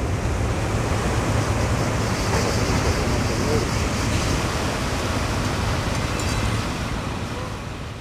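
Ocean surf and wind rushing steadily, with a low steady hum underneath, fading away over the last second or so.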